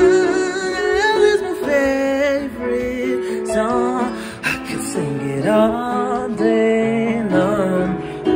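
Song vocal over a soft music backing: a singer holding long notes with vibrato and sliding between pitches in wordless runs between lines of a slow love song.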